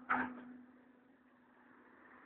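A brief rustle as the phone is pressed against clothing, then near silence with a faint steady low hum.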